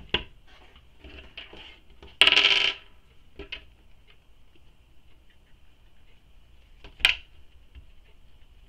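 A small metal twist-lock piece clattering and ringing briefly on a hard tabletop a little over two seconds in, like a dropped coin. Sharp single clicks of handling the hardware come at the start and about seven seconds in.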